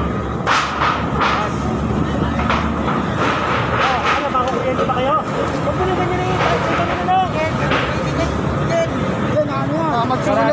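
People talking over a steady hum of street traffic, with a few sharp clicks in the first few seconds.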